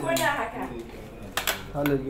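A person speaking, with a few sharp clinks about one and a half seconds in.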